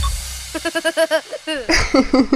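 The tail of a children's song fades out, then a cartoon child's voice giggles in short, quick sounds that rise and fall in pitch.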